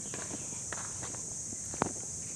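Footsteps of a person walking over garden soil and grass: a few soft steps, with one sharper step near the end, over a steady high hiss.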